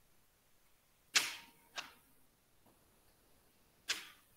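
Three sharp clicks with short fading tails: a loud one about a second in, a fainter one just after, and another near the end.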